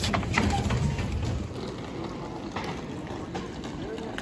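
Background noise while walking out through metro ticket barriers: a low rumble that fades after about a second and a half, with a few short clicks near the start.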